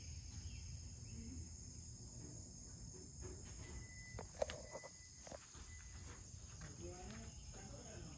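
Steady high-pitched insect chorus over a low rumble. A few sharp clicks come a little past the middle.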